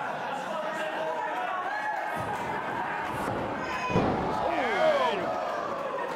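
A wrestler crashing onto the wrestling ring mat about four seconds in: a single heavy slam on the boards. Voices yell right after it.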